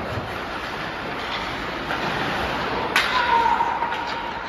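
A sharp crack from ice hockey play about three seconds in, followed by a short held tone, over steady rink noise.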